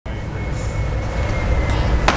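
Steady low roar of a glassblowing hotshop's gas-fired furnaces and burners, with a thin high whine held through most of it.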